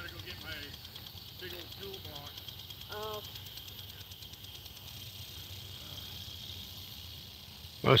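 Quiet outdoor background with a few faint, distant voices.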